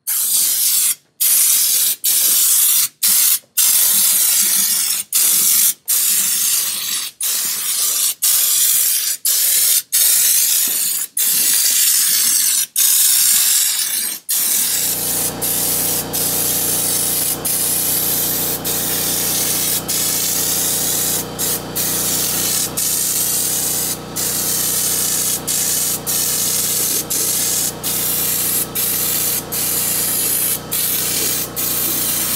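Air-fed Raptor bed liner spray gun spraying the coating: a loud hiss in pulls of a second or so, broken by short pauses as the trigger is released. From about halfway the hiss runs longer with fewer breaks, over a steady low hum.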